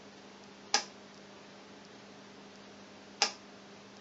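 Two sharp clicks about two and a half seconds apart: the rotary selector switch of a capacitor checker being stepped up to the next test voltage during a capacitor leakage test. A faint steady low hum runs underneath.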